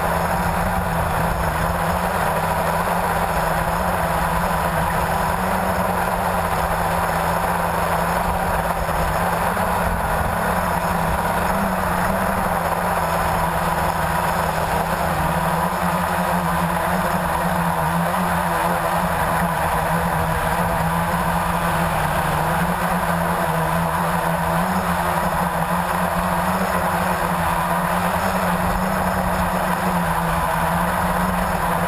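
Blade 350QX quadcopter's electric motors and propellers buzzing steadily in flight, heard close up from its onboard camera, the pitch wavering slightly as the motors adjust.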